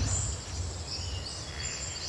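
Woodland ambience: a steady high insect drone with a few faint bird chirps over a low rumble.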